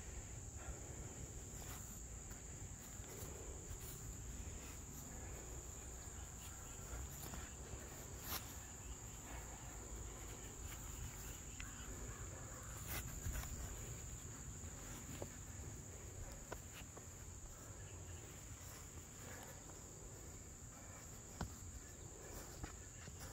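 Faint, steady, high-pitched insect chorus, one unbroken even tone, with a few soft knocks now and then.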